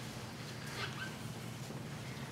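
Quiet room with a steady low hum and a brief faint high-pitched squeak a little under a second in.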